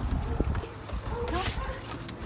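A large bully-breed puppy scrambling up into the back of a station wagon: a run of quick clicks and knocks as its claws scrape on the rear bumper and cargo floor.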